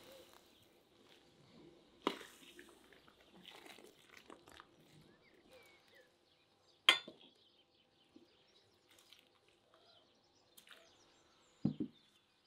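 Serving-up sounds at a ceramic platter: a metal skimmer clinks sharply against the bowl twice, about two and seven seconds in, with soft handling and rustling between. Near the end there is a dull thump as the loaded platter is set down on the table.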